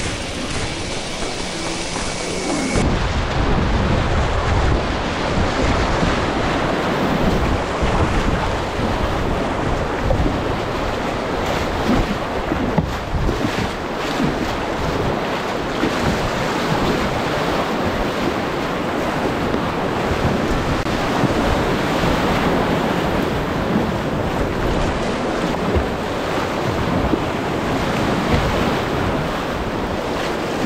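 Rushing whitewater rapids splashing around a kayak's bow, heard close up from a camera on the kayak. From about three seconds in, a deep rumble of wind and spray buffeting the microphone runs under the water noise.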